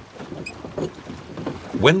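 Sound of a rowed wooden ship on the water, with oar strokes and splashing and faint voices in the background. A narrator's voice begins near the end.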